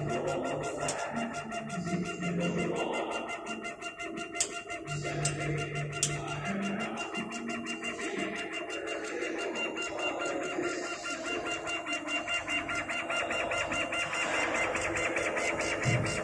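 Stepper motors of a CO2 laser engraving machine driving the laser head and gantry, making pitched whines that jump up and down in pitch as the head changes speed, over a steady machine hum. A few sharp ticks sound near the middle, and the motor sound turns to a fast, even buzz near the end as the head begins marking the wood.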